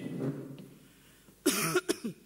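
A person's short cough, about one and a half seconds in.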